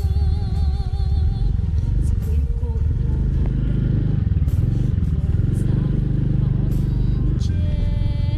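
A motorbike engine running steadily at low speed on a rough dirt track. A song with a wavering singing voice plays over it in the first second or so and again near the end.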